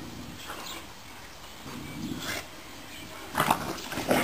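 Two dogs, a Dogue de Bordeaux and a boxer, play-fighting: a low, rough growl about two seconds in, then a loud, sudden burst of rough-play noise near the end as they grapple.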